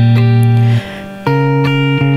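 Fingerpicked chord voicings on a Variax electric guitar. A chord rings out and is damped a little under a second in; after a short quieter gap a new chord is plucked and rings on.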